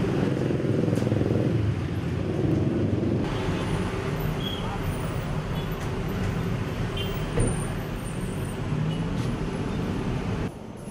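Steady street traffic rumble with indistinct voices in the background; the ambience changes at a cut about three seconds in.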